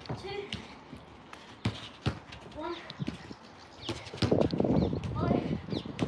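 A football being passed against a wall and trapped on artificial turf: several sharp knocks of boot on ball and ball on wall, with a busier run of touches and shuffling steps about four seconds in.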